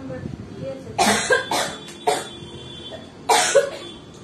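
A person coughing: a quick run of three or four coughs about a second in, then another cough or two near the end.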